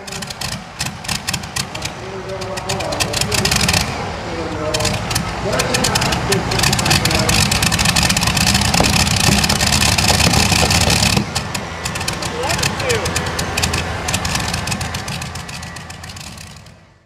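Modified pulling tractor's engine running loud and rough while hitched to the sled, building over the first few seconds, holding at its loudest, then easing back about eleven seconds in and fading out near the end.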